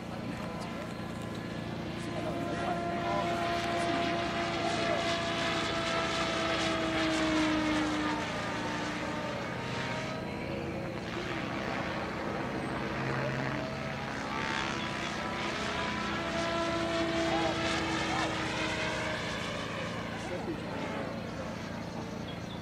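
Radio-controlled model helicopter in flight, its engine and rotor giving a steady drone with a whine that swells twice, its pitch sliding slowly down each time.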